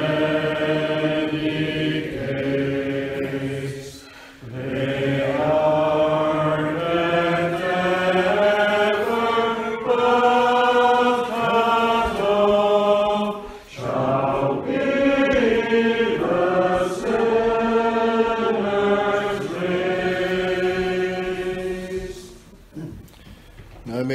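A congregation singing unaccompanied in slow, long-held notes, line by line, with short breaks for breath about four seconds in and again near fourteen seconds. The singing ends at the close of the service.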